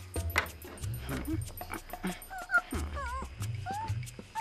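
Background music with a cartoon squirrel's short, high squeaky chatters, several of them in the second half.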